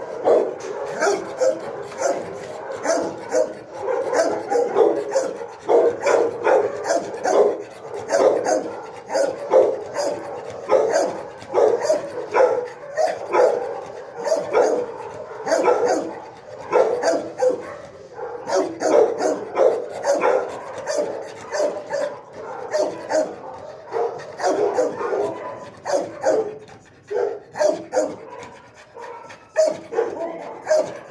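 Dogs in a shelter kennel barking, several barks a second with hardly a pause, overlapping one another.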